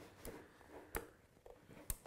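A few faint clicks from a DeWalt DCN690 cordless framing nailer being turned over and handled, its folding rafter hook being worked. The loudest click, doubled, comes near the end.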